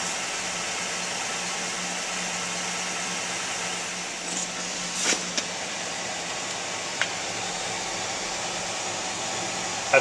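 2006 GMC Sierra engine idling with a steady hum, with a few brief clicks and knocks around the middle.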